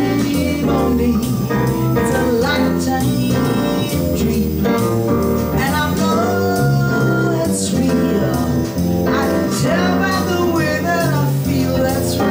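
A woman singing a jazz tune through a microphone, backed by a live band with electric bass guitar and keyboard.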